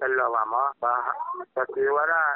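Speech only: a newsreader reading a radio news bulletin in Sgaw Karen, in quick phrases with brief pauses.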